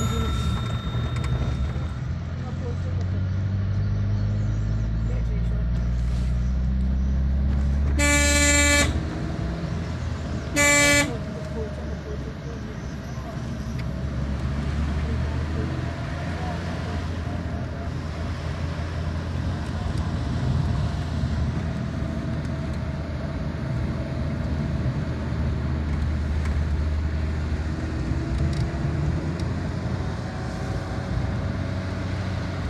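Car engine and road noise heard from inside the cabin on a winding mountain road, the engine note rising for a few seconds as it pulls. A car horn honks twice, a blast of about a second around eight seconds in and a short toot a couple of seconds later.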